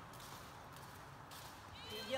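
Faint footsteps of people walking on a concrete walkway inside a corrugated-metal pedestrian tunnel, over low background noise; a voice starts right at the end.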